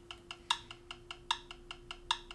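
Smartphone metronome app clicking fast at 300 beats per minute, about five clicks a second, with every fourth click louder as the accented beat.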